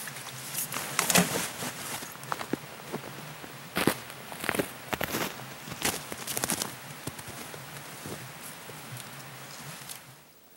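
Footsteps walking through snow, an uneven run of steps that thins out after about seven seconds.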